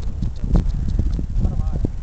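Irregular low thuds and rumble, with a person's voice calling out briefly near the end.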